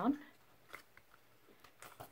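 A few faint short clicks and rustles of a picture frame's backing board being pushed into place by hand, the clearest about three-quarters of a second in and another near the end.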